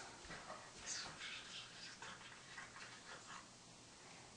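Faint whispering, a few soft breathy words spoken close to the ear.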